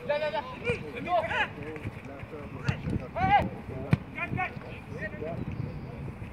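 Young footballers' voices calling and shouting across the pitch, with sharp thuds of a football being kicked; one clear kick about four seconds in.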